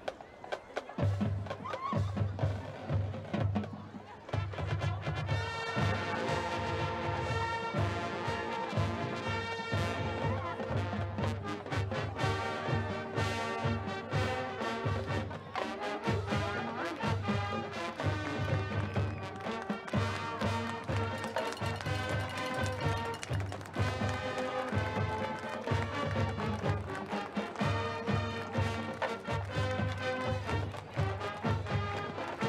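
High school marching band playing a medley of the armed forces' service songs. Bass drums start beating about a second in, and the brass and woodwinds come in around five seconds in.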